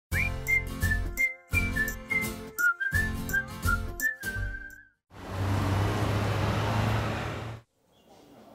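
Title theme music: a whistled melody in short phrases over a beat for about five seconds, then a rushing noise with a low hum that cuts off suddenly.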